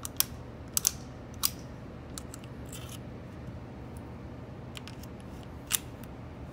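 Sharp metallic clicks and snaps of a Beretta 950B Minx .22 Short pocket pistol being handled and worked. There is a cluster of four in the first second and a half, a few lighter ticks in the middle, and one more strong click near the end.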